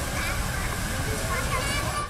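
Steady rushing of a plaza fountain's water jets, with faint children's voices and chatter mixed in.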